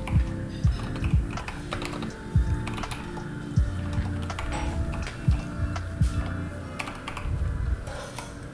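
Computer keyboard typing: irregular keystrokes, some struck harder than others, over quiet background music.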